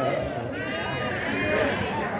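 A goat bleating: one long, drawn-out bleat beginning about half a second in, with men talking in the background.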